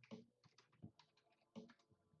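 Near silence broken by faint, irregular light clicks, about seven in two seconds.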